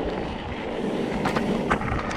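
Mountain bike rolling over a loose dirt and gravel trail: a steady crunch and rumble of the tyres and frame rattle, with a few sharp clicks in the second half.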